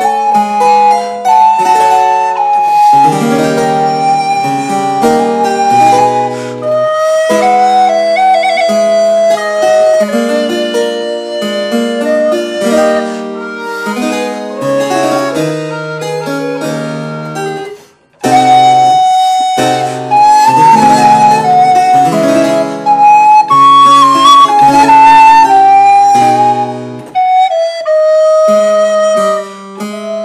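Alto recorder in G playing the melody of an Italian Baroque sonata in G minor, accompanied by harpsichord continuo. The music breaks off for a moment about eighteen seconds in, then carries on.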